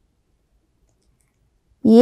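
Near silence, then a woman's voice starts speaking near the end.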